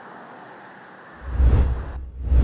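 Steady road-traffic noise, then about a second in a loud, deep whoosh of a TV news transition sting starts as the programme's logo bumper comes up.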